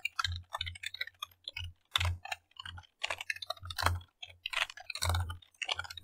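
Typing on a computer keyboard: a quick, irregular run of keystrokes, some struck harder than others.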